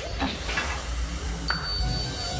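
Cartoon transformation sound effect: a hissing rush with a low rumble and a few quick rising sweeps, then a click about one and a half seconds in that leaves a thin, high steady tone ringing.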